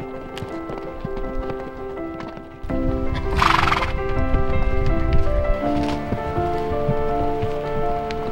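Background music with sustained melodic notes over the hooves of a string of walking horses clopping on a dirt trail. A short noisy burst comes about three and a half seconds in, and the low end grows louder from about two and a half seconds.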